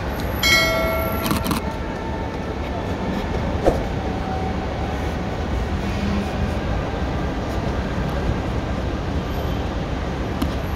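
Steady low rumble of road traffic and idling vehicles. A short bright chime-like tone sounds about half a second in, and a single sharp click comes near the middle.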